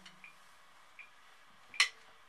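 Metronome clicking at 80 beats per minute: three short ticks about three quarters of a second apart, the last one clearly louder than the first two.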